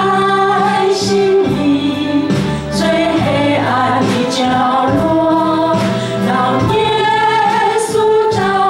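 Small group of women singing a Mandarin worship song together through microphones, with sustained notes over an instrumental backing.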